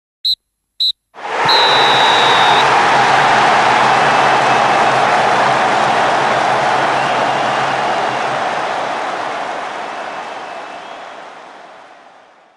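A referee's whistle sounds two short blasts, the full-time pattern, then a loud rush of crowd noise starts with a longer whistle blast over it. The crowd noise slowly fades out.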